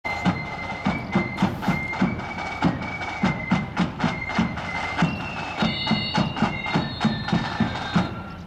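Marching flute band playing: a high flute melody over steady drum beats, with the flutes splitting into two or three parts about five seconds in. The tune ends on a final drum beat right at the end.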